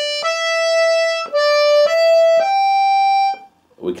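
Two-row diatonic button accordion (melodeon) playing single right-hand melody notes: a few notes step back and forth, then it jumps up a button to a higher note held for about a second before the bellows stop.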